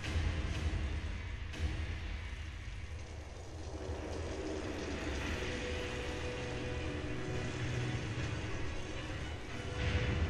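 Soundtrack of a building-projection show played over loudspeakers: a deep rumbling sound effect that sets in with a sudden hit, a sharp knock about a second and a half in, and a held tone entering about five seconds in.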